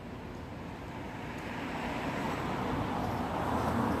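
A road vehicle passing on the street, its tyre and engine noise swelling steadily and peaking near the end.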